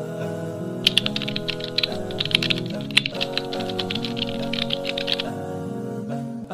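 Rapid computer-keyboard typing clicks, starting about a second in and stopping near the end, over steady background music.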